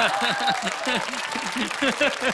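Studio audience applauding, with a man's voice over it in quick repeated syllables, about five a second.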